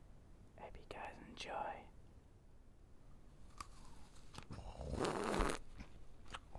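A brief whisper about a second in, a couple of small clicks, then a single bite into a whole red apple about five seconds in, the loudest sound.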